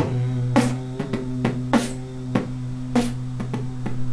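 Beatboxing while humming: a steady nasal hum held on one note throughout, with kick drum and snare sounds pushed out through the lips over it, the snares coming about every second and a quarter.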